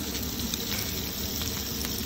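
Mackerel fillets sizzling steadily in a frying pan on medium-high heat, with a few faint ticks.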